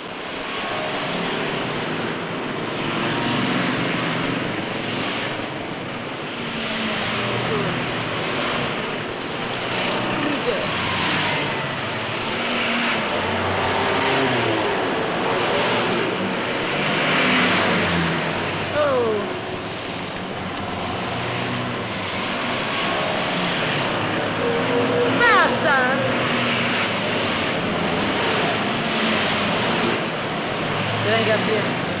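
Heavy city street traffic: many car engines running and passing in a dense, shifting din, with a few short rising and falling tones partway through and again later.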